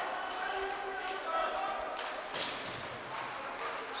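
Ice hockey play in a rink: skates on the ice and sticks and puck knocking now and then, with faint voices of players and spectators.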